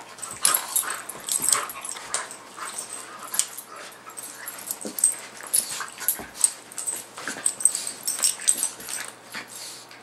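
A miniature pinscher and another dog play-fighting: a rapid, irregular run of short dog vocal noises and mouthing sounds, several a second.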